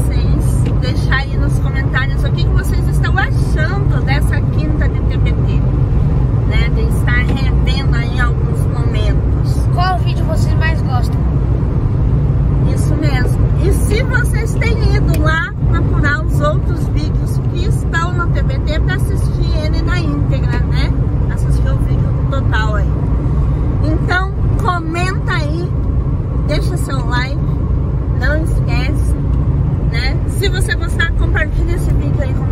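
A woman talking inside a moving car, over the steady low rumble of road and engine noise in the cabin.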